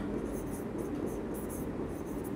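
Pen strokes scratching across the surface of an interactive display as a line of handwriting is written: short, irregular scratches with a steady low room hum beneath.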